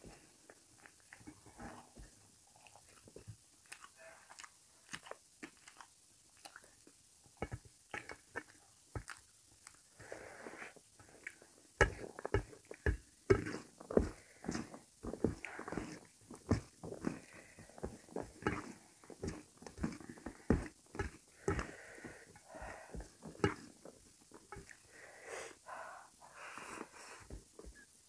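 A person eating rice and potato curry by hand: chewing and wet mouth smacks, with fingers mixing rice on a steel plate. The smacks grow louder and come thicker about twelve seconds in.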